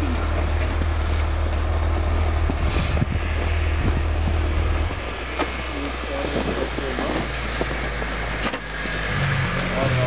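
A low, steady engine idle, most likely another snowmobile running close by. It drops to a deeper note about five seconds in and rises again near the end, with faint talking underneath.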